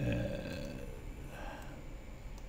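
A man's low, drawn-out hesitation sound, "uhh", at the start, fading within about a second into a quiet pause.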